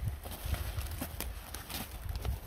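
Footsteps on loose gravel and pine litter: a few uneven crunching steps.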